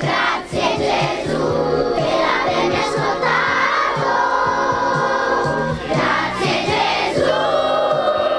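Music with a choir singing over an instrumental backing.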